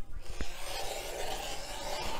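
Rotary cutter blade rolling through a starched cotton fabric square along an acrylic ruler on a cutting mat: a steady scraping hiss lasting about two seconds, with a small click about half a second in.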